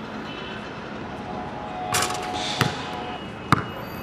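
A basketball being dribbled on a hard outdoor court: sharp bounces about once a second in the second half.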